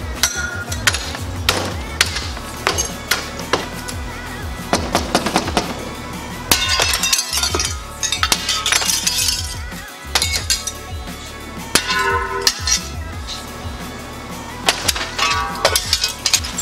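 Broken window glass being knocked out of its frame: repeated cracks, smashes and clinks of shards breaking off and falling, spread through the whole stretch.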